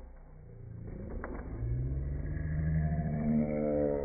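A voice slowed down by slow-motion playback, turned into one long, deep, drawn-out sound that rises slowly in pitch and falls back near the end. A couple of short clicks come about a second in.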